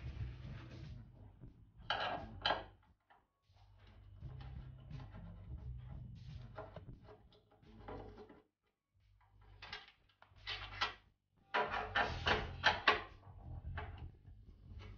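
Metal and glass knocks and clicks from working on an open oven door: a screwdriver turning in the screws that hold the door's inner glass panel, with the glass and door frame rattling, in short clusters around two seconds in and again near the end.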